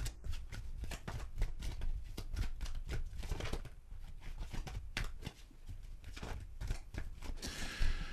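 A tarot deck being shuffled by hand: a quick, irregular run of card flicks and rustles.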